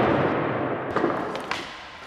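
Skateboard wheels rolling on smooth concrete just after a landing, the rolling noise fading steadily as the board moves away, with two light clicks in the second half.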